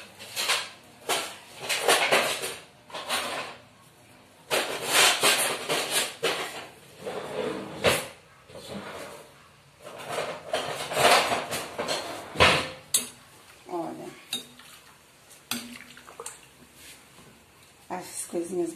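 A spoon stirring and scraping through grated green papaya in a large aluminium pot of water, knocking against the pot in repeated clattering bursts.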